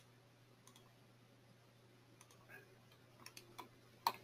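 Near silence with a handful of faint, short computer mouse clicks, a few more of them near the end, over a faint steady low hum.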